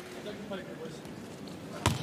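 Low arena crowd noise, then near the end a single sharp slap of a volleyball being struck on a serve.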